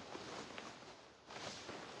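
Silk sari rustling as it is unfolded and draped by hand, in two swells of soft swishing, the second beginning a little past halfway.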